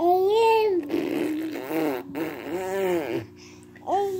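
Baby fussing on his tummy: several drawn-out, wavering vocal cries, with a rough, noisy straining sound about a second in.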